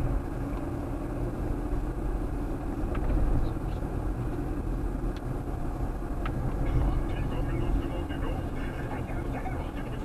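Car engine and tyre noise heard from inside the cabin while driving, a steady low rumble with a few faint ticks.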